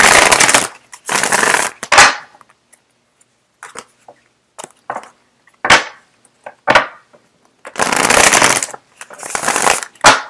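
A deck of tarot cards being shuffled: bursts of rapid flapping clicks from riffles of the cards, twice at the start and twice near the end, with a few single sharp snaps and light ticks in the quieter middle stretch.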